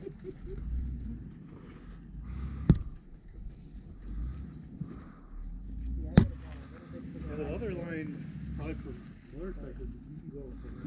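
Faint distant talking over a low, uneven rumble, broken by two sharp knocks, one a little under three seconds in and one about six seconds in.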